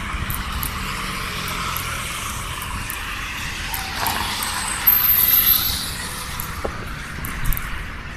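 Road traffic: cars passing on the street, a steady tyre-and-engine noise that swells between about four and six seconds in as a vehicle goes by.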